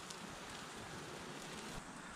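A faint, steady hiss.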